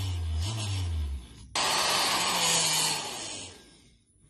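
Electric reaction-wheel motors of a self-balancing cube whirring: a low hum for about the first second, then a sudden, louder whir with a falling pitch that lasts about two seconds and fades out near the end.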